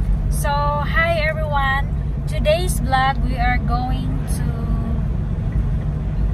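Steady low rumble of a car's engine and tyres heard inside the cabin while driving, with a woman talking over it for the first four seconds or so.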